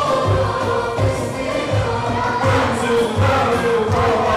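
A choir of voices singing a melody together over a steady low drum beat.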